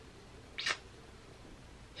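A single short puff of air blown out through the lips from puffed cheeks, about half a second in.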